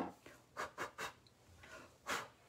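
A Prismacolor slate grey coloured pencil being sharpened: a run of short scraping rasps, about five in the first second, as the pencil is twisted in the sharpener.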